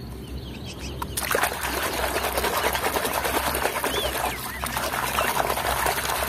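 A mud-caked toy cement mixer truck being swished and rinsed by hand in shallow muddy water: continuous splashing and sloshing starting about a second in.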